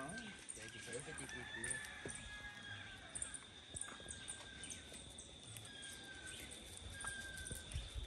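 Quiet outdoor ambience: a thin, steady high-pitched drone with short, faint distant bird calls every second or two, which may include a rooster crowing.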